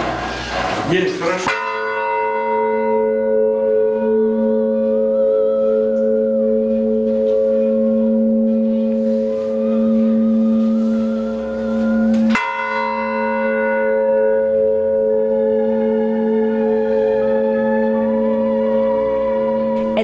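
A large Russian Orthodox church bell struck twice, about eleven seconds apart. Each stroke rings on for a long time in a deep, steady hum.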